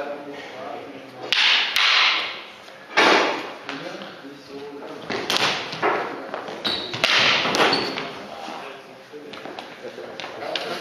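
Wooden sparring sticks knocking and striking in a stick fight, a scattered series of sharp knocks over several seconds, with scuffling footwork on the hall floor and a hall echo.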